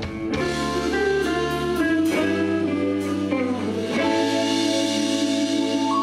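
Live rock band playing instrumentally: electric guitar, bass, keyboards and drums, changing chords in the first two seconds with a few drum hits, then sustaining one long held chord in the second half.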